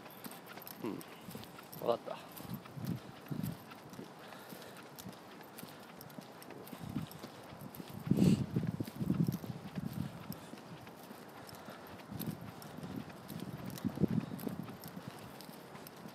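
Quiet, indistinct voice sounds in short, irregular snatches with pauses between them.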